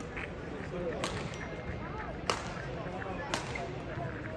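Badminton rally: three sharp racket strikes on the shuttlecock about a second apart, the middle one loudest, over a murmur of spectators' voices.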